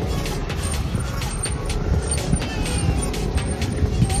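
Wind buffeting the microphone and a low road rumble from riding along on a bicycle, with faint high chirps repeating a couple of times a second.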